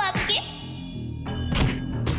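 Dramatic background score with a heavy impact hit about a second and a half in, followed by ringing metallic tones. A voice trails off in the first half-second.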